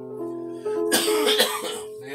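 Electronic keyboard holding sustained notes and chords. About a second in, a short, loud cough or throat-clear breaks in over the held notes.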